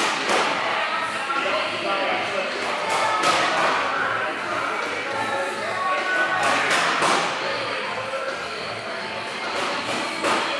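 Busy gym ambience: indistinct background voices and music, with a few sharp thuds of weights.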